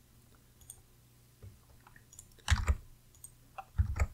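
Scattered clicks of a computer mouse, a short cluster about two and a half seconds in and another sharp click near the end, with faint ticks between.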